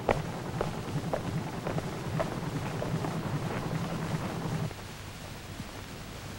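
Footsteps, about two a second, over a steady low hum; both stop suddenly about three-quarters of the way in, leaving a quieter background.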